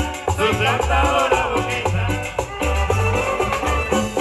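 Salvadoran chanchona band playing live: violins carry the melody over a steady, pulsing bass line, drums and a metal scraper keeping the rhythm.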